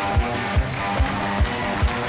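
Rock music kicks in: a steady kick drum, a little over two beats a second, under sustained guitar chords.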